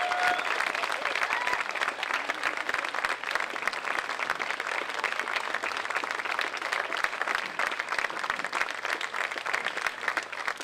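Audience applauding at the end of a jazz ensemble's performance: dense, steady clapping from a large seated crowd.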